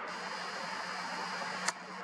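Steady background hiss with a faint low hum, broken by one sharp click near the end.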